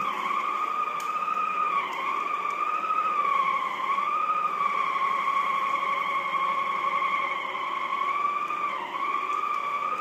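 Shark Sonic Duo hard-floor cleaner running with its polishing pad on a hardwood floor: a steady high motor whine that wavers slightly in pitch. It dips briefly about two seconds in and again near the end.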